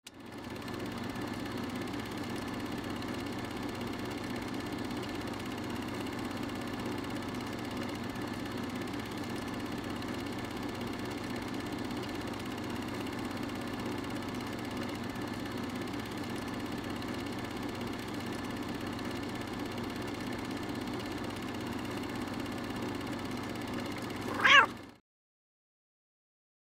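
A domestic cat purring steadily for about twenty-five seconds. Near the end it gives one short meow, the loudest sound, and then the sound cuts off.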